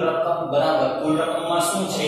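A man's voice talking with long, drawn-out syllables, fading briefly near the end.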